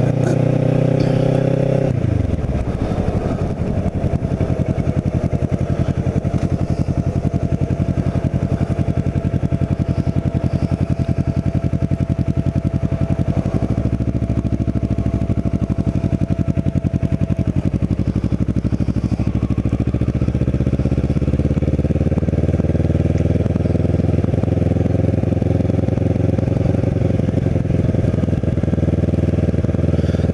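Kawasaki Ninja 650R's parallel-twin engine ridden at low speed. The engine note drops sharply about two seconds in as it slows, runs low and steady through the middle, then climbs gradually as the bike picks up speed near the end.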